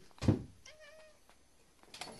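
A thump, then a short, soft meow from a domestic cat.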